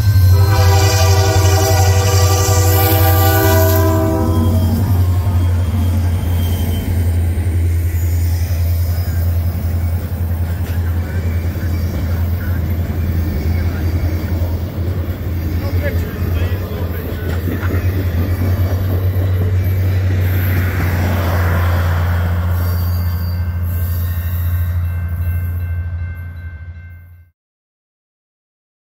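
EMD GP40-2LW diesel locomotives blowing their air horn in one long chord of about four seconds as they come up to the crossing, with the deep drone of the diesels under load climbing the grade. The passenger cars then roll past with steady wheel-on-rail noise, and the sound fades out about a second before the end.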